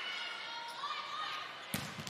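Gym crowd noise with scattered voices calling out, then near the end a sharp smack of a volleyball being struck, with a second, lighter hit just after.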